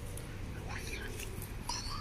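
Steady low, distant rumble of a Boeing 737-800 jet airliner passing high overhead. A few brief, faint higher-pitched sounds come through about halfway through and again near the end.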